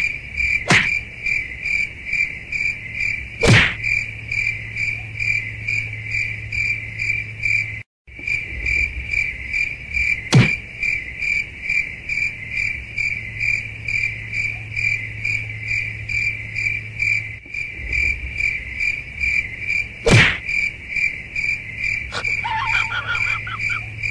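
Evenly pulsed cricket-like chirping, several chirps a second, over a steady low hum. Four quick falling swish sounds cut through it, about a second in, at three and a half seconds, near ten seconds and near twenty seconds.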